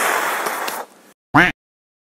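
A long, loud, breathy exhale of relief, then a brief voiced sound about a second and a half in, after which the sound cuts off abruptly.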